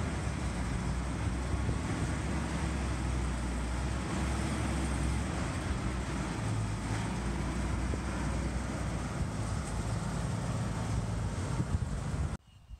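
M8 Greyhound armoured car's Hercules six-cylinder petrol engine running steadily at low revs as the vehicle is eased slowly into a tight shed.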